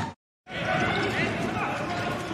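A handball bouncing on an indoor court with players calling out, in a large, empty sports hall. The sound cuts out completely for a moment just after the start, then resumes.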